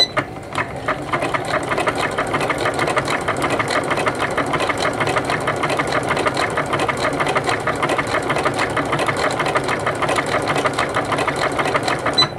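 Janome MC9000 computerized sewing machine stitching a decorative stitch at a steady speed: a fast, even run of needle strokes that stops near the end.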